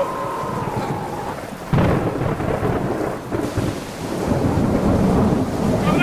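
Thunderstorm sound effect with rain and rumbling thunder. A sudden loud thunderclap comes just under two seconds in, and the rumbling grows louder toward the end. A steady high whistling tone dies away in the first second or so.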